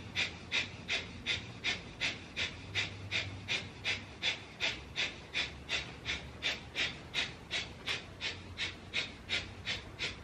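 Breath of fire: a steady run of rapid, forceful breaths through the nose, nearly three a second, each a short sharp hiss.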